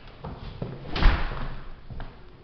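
An exterior front door slamming shut about a second in: one loud thud with a short ring of echo after it.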